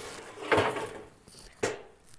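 Wooden-handled garden tools knocking together as a hula hoe is pulled out from among them: a scraping rattle about half a second in, then one sharp knock near the end.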